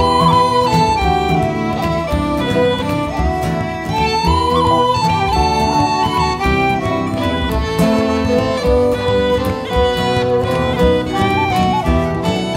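Instrumental break in a Celtic folk song: a fiddle plays the melody over steady accompaniment from guitar and other instruments, with no singing.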